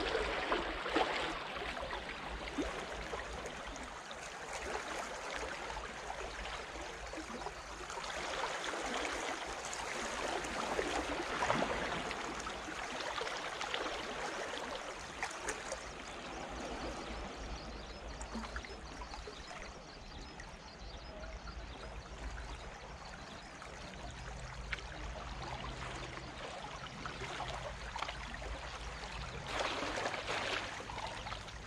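Small waves lapping and trickling among the rocks at the edge of a calm sea: a steady wash of water that rises and falls gently, with light splashes.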